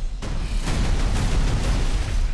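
A large movie explosion: a loud, continuous blast with a deep rumble and crackling debris, several bangs running into one another.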